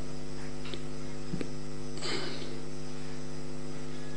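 Steady electrical mains hum on the audio feed: an unchanging buzz made of several evenly spaced tones, with no speech over it.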